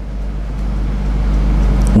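A steady low hum and rumble with faint hiss between words, growing slightly louder toward the end.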